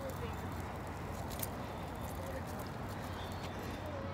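Street background: a steady low hum with faint voices in the distance.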